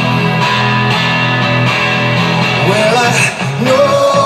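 Live rock music: a steadily strummed guitar, with a singing voice coming in near the end.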